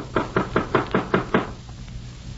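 Knuckles knocking on a wooden door, a quick series of about seven knocks over a second and a half.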